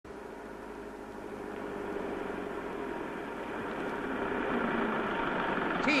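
Engine of a light flatbed truck running as it drives up, growing steadily louder as it approaches. A man's voice starts right at the end.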